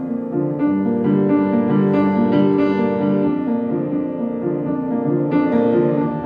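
Kawai upright piano played solo: full held chords under a melody, with fresh chords struck about half a second in and again near the end.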